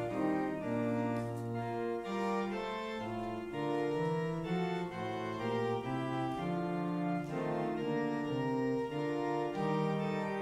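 Organ playing a hymn tune in sustained full chords, the notes moving to new pitches about every half second.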